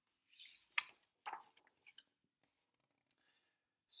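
Paper page of a picture book being turned: a soft rustle and a few crisp snaps of the page in the first two seconds.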